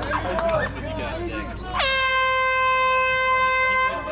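An air horn sounds one long, steady blast of about two seconds, starting a little under two seconds in and cutting off just before the end: the start signal for a race. Crowd chatter comes before it.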